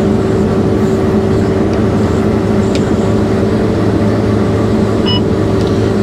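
New Holland CR8.80 combine harvester running steadily under load while harvesting barley, heard from inside the cab: an even machine drone with a constant hum.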